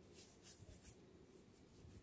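Faint rustle and scratch of coarse fibre rope strands handled and tucked by hand while splicing a broken rope, with a few short scratches in the first second.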